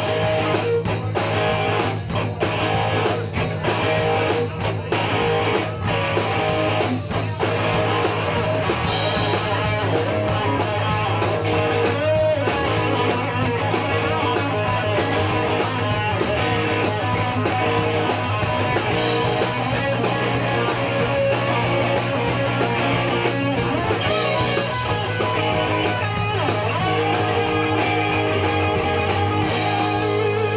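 Live rock band playing an instrumental passage on electric guitars, bass and drums, with no vocals.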